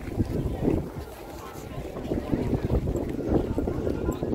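Wind rumbling and buffeting on the microphone of a camera carried outdoors, with voices of people in the background.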